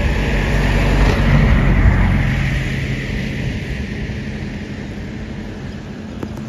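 A motor vehicle's engine and road noise, swelling about a second in and then slowly fading away, like a vehicle passing by.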